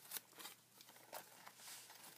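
Faint rustling and a few light taps of paper pages being turned and handled in a ring-bound handmade journal.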